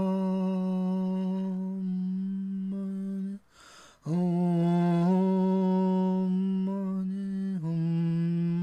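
A voice chanting a long, sustained "Om" on one steady low note, with a quick breath about three and a half seconds in before the next held tone begins.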